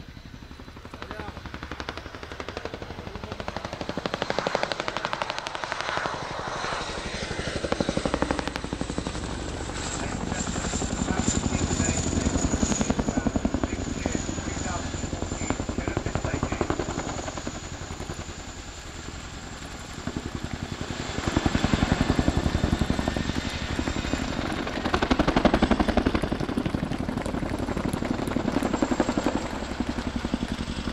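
RAF Boeing CH-47 Chinook HC.2 tandem-rotor helicopter with its twin turboshaft engines running at close range: a fast, steady beat of the rotor blades with a high whine above it. It grows louder over the first few seconds, dips briefly past the middle, and is loudest for several seconds near the end.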